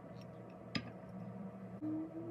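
A glass tumbler set down on a marble serving board with one light click, over a faint steady hum. A brief low hum sounds near the end.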